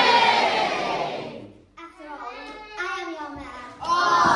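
Child performer shouting loudly on stage, one long call falling in pitch, followed by quieter child speech, and another loud shout starting near the end.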